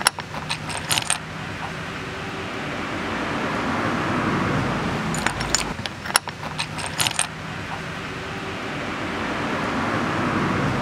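Pieces of gem silica chrysocolla rough clicking and clinking against each other and the wooden table as they are handled, in a cluster at the start and another about five to seven seconds in. Under the clicks runs a steady rushing background noise that swells in the middle and again near the end.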